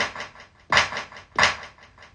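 Percussive sound triggered from a drum-pad controller and played through studio monitors: three sharp hits about two-thirds of a second apart, each trailing off in a quick run of fading echoes from a delay effect.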